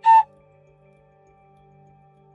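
A short electronic chime note right at the start, the second of two quick notes with the second a little lower, followed by soft background music of steady held tones.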